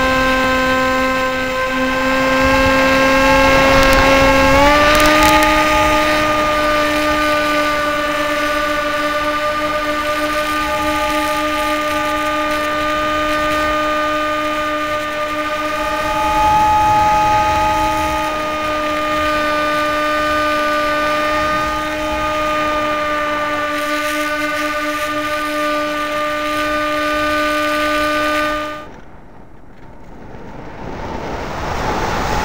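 Motor and propeller of a radio-controlled model airplane, heard from a camera on board: a steady tone that steps up in pitch about five seconds in, holds, then cuts off near the end, leaving only wind noise.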